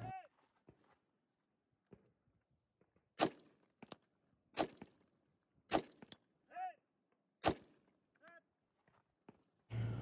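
KP-15 5.56 mm rifle firing four aimed single shots, about a second or more apart, from a bipod rest, with a few fainter cracks between them.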